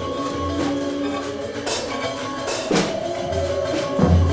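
Live improvised ensemble music: electric guitar holding sustained notes over low bass tones, with scattered hand percussion and two sharp percussion hits a little under a second apart midway through.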